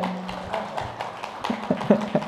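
Audience clapping, a dense patter of many hands that fades away, with a few voices coming in near the end.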